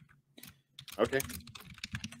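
Typing on a computer keyboard: a run of short, separate key clicks.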